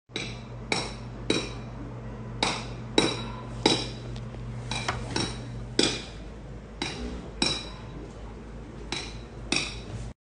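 A bird giving short, sharp, clinking calls, about fifteen of them at irregular intervals, over a low steady hum.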